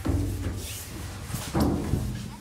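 Bodies sliding down a stainless-steel tube slide: a deep rumble inside the metal tube, with two booming thumps, one at the start and another about one and a half seconds in.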